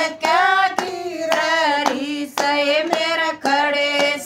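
Women singing a Hindi devotional bhajan together, with hand claps keeping the beat about twice a second.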